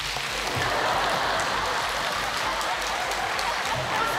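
Theatre audience applauding: a steady, dense clapping throughout.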